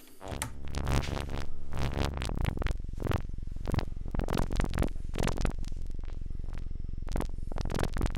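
Modular synthesizer tone through a Steve's MS-22 filter, its cutoff modulated at audio rate. It makes a rapidly pulsing, buzzing drone over a steady low bass, and the tone shifts as the filter knobs are turned.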